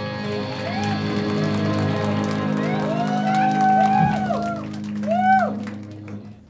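A live rock band holding a chord with electric guitar at the end of a song, the chord ringing out steadily. Over it, audience members shout and whoop several times, loudest a little after five seconds in, and the sound then falls away.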